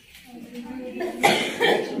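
A person's voice making two short, harsh bursts a little over a second in, amid low voices.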